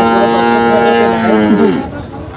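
A young bull mooing: one long, steady call that drops in pitch and fades near the end.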